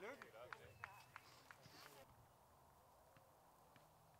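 Faint voices of people talking in the background during the first two seconds, with a few sharp clicks among them, then near silence.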